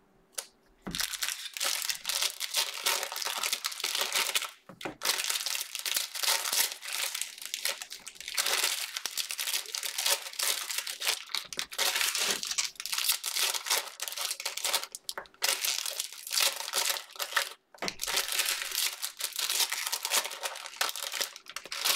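Cellophane wrappers of trading-card packs crinkling as they are torn open and handled, starting about a second in and running on with two brief pauses.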